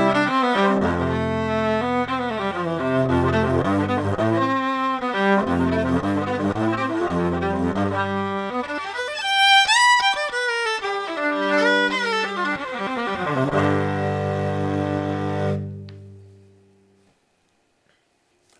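Six-string hollow-body electric violin bowed through its pickup, recorded straight into a computer with no preamp: held low notes and double stops, with sliding notes higher up about halfway through. The last note dies away about two seconds before the end.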